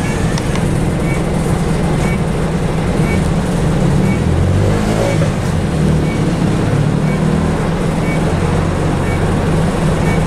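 Bus engine running under way, heard from inside the passenger saloon as a steady low drone whose pitch shifts about halfway through. A faint tick sounds about once a second.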